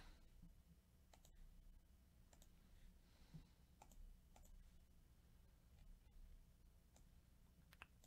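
Near silence with a low background hum and a few faint, scattered clicks of a computer mouse.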